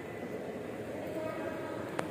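Steady background din of a shopping mall interior, with faint distant voices, and a brief click near the end.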